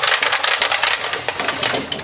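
Black plastic test-lead reel of green cable clicking rapidly as it turns and the lead is reeled.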